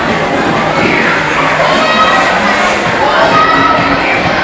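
Loud, steady hubbub of many children shouting and chattering at once in a large hall.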